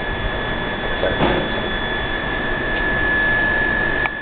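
Gas flame burning with a steady rushing noise, with a constant high-pitched whine running through it.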